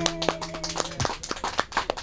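Acoustic guitar's final chord ringing, then cut off about a second in, with scattered sharp hand claps starting over it as applause begins.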